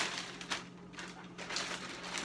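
Plastic bag crinkling as it is pulled off a plastic helmet shell, loudest at the start and dying down within half a second, with a sharp crackle about half a second in and a few fainter rustles after.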